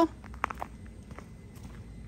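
Footsteps crunching on a gravel drive: a few short steps, most distinct about half a second in, fainter after.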